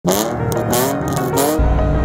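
A BMW E46 330xi's 3.0 L straight-six, running through a muffler delete and eBay headers, revs up in a few rising pulls with rasping bursts from the exhaust. About a second and a half in it cuts to background music with a steady low beat.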